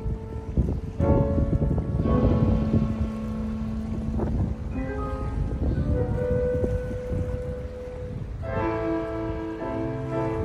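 Chamber music for flute, clarinet and piano, with long held woodwind notes and fuller chords near the end. A low, steady rumble of wind and water lies underneath.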